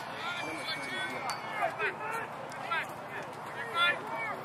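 Several spectators' voices talking and calling out at once on the sideline of a youth lacrosse game, overlapping so that no clear words come through.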